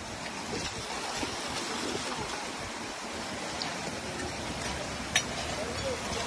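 Shallow river water flowing steadily, an even rushing noise. A single short click about five seconds in.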